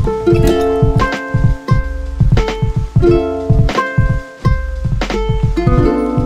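Background music: short plucked-string notes over a steady beat.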